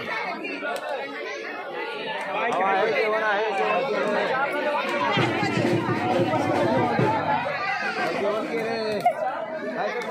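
Crowd chatter: many people talking over one another at once, getting a little louder a few seconds in.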